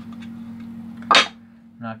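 Clear plastic display-case cover being handled, with one sharp plastic clack about a second in. A steady low hum runs underneath.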